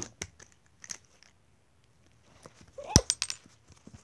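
Plastic toy horse being handled against a cardboard box: scattered light clicks and taps, then one sharp knock about three seconds in, just after a brief rising vocal sound.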